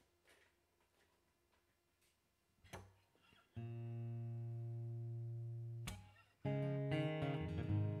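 Acoustic guitar: a few seconds of near silence with faint small clicks, then a single strummed chord left ringing for about two seconds. A louder strum comes about six seconds in, its notes changing as playing begins.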